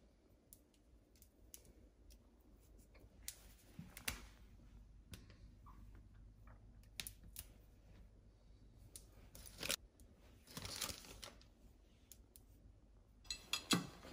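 Faint, scattered small clicks and rustles of fingers handling fresh thyme sprigs over a ceramic plate, with a few louder rustles about ten seconds in.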